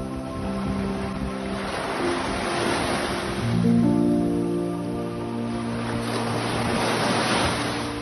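Small waves washing up on a sandy shore, the wash swelling twice, a few seconds apart. Under it, background music of slow held chords that change about three and a half seconds in.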